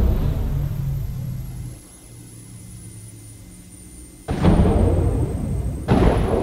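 Cinematic sound-design score: a deep low hit dies away over the first two seconds into a quiet low hum, then a heavy low hit strikes suddenly about four seconds in and another just before the end, with a faint high whine slowly falling underneath.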